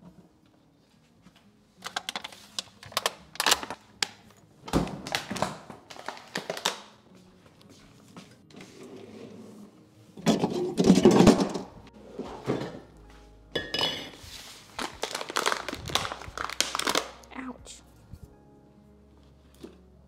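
Kitchen clatter of dishes and food containers being handled, with knocks and rattles in several bursts, the loudest a little past the middle.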